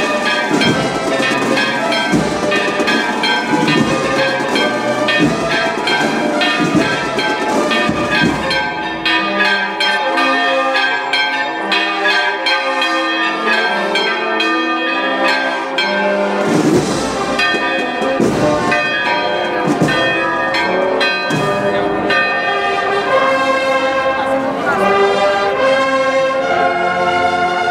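Church bells ringing, many overlapping strokes with long ringing tones.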